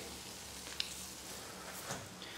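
Hot frying oil sizzling faintly in a pan, with a couple of small ticks, one just under a second in and one near the end.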